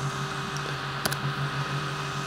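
Mac computer fans running with a steady hum and hiss, and a single sharp click about a second in.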